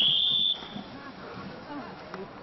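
A single short whistle blast, one high steady note about half a second long that starts sharply, with faint spectator voices after it. It is the warning whistle blown on a cross-country course as a horse approaches the fence.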